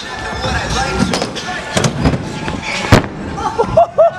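Stunt scooter wheels rolling over the skatepark ramps with a rising roar, broken by several sharp clacks of the scooter striking the ramp. The loudest crack comes near three seconds in.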